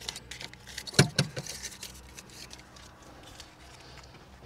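A run of light, sharp metallic clicks and rattles. The two loudest come about a second in, then it thins to faint ticks.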